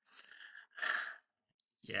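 A man sighing: two breaths without voice, the second louder, then a spoken 'yeah' near the end.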